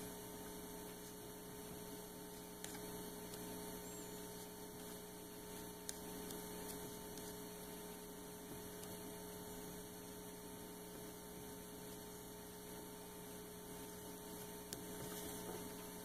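Steady, faint electrical mains hum, with a couple of faint ticks from a felt-tip marker writing on a whiteboard.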